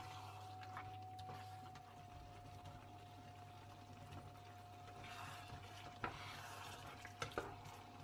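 A spatula stirring a thick, creamy chicken and mushroom sauce in a non-stick frying pan, with a faint sizzle. A little water is poured in from a bowl around the middle, and a few light clicks of the spatula against the pan come near the end.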